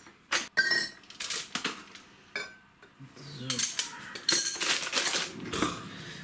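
Metal drinking straws clinking against drinking glasses, mugs and ice as they are dropped into the drinks: a scattered series of short, high, ringing clinks.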